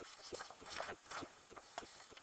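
A sheet of paper being lifted and turned over on a writing pad: a few soft rustles and crinkles of the page.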